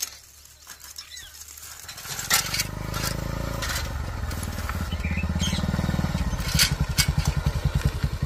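A motorcycle engine approaching, quiet at first and growing louder over the last several seconds, its even engine beat plainly heard near the end. A few sharp clicks sound along the way.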